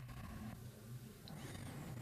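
Faint room tone from a desk microphone with a low, steady hum; no distinct sound events.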